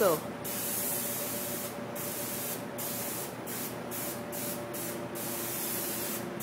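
Airbrush spraying paint with a steady hiss, broken by several brief gaps from about two seconds in, over a faint steady hum.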